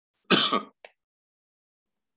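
A man clearing his throat once, a short rasp, followed by a faint click.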